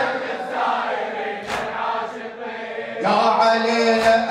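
Men's voices chanting an unaccompanied Arabic Shia mourning lament (latmiyya) in a steady, repetitive chant. About three seconds in, a louder sustained note comes in and is held steady.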